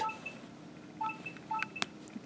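Small coloured metal jump rings in a chain mail ball clinking against each other with three short, light pings as a jump ring is closed with flat-nose pliers, followed by a sharp metallic tick near the end.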